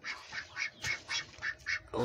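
Brooding Muscovy hen hissing in short breathy bursts, about three a second, while disturbed on her eggs in the nest.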